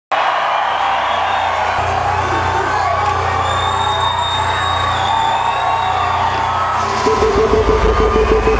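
Loud music in an arena, with a crowd cheering and yelling over it. About seven seconds in, a deep, pulsing low sound comes in and the sound grows heavier.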